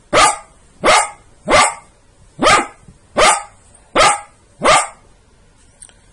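A dog barking seven times in a steady series, about one bark every 0.7 seconds, each bark loud and short with a falling pitch.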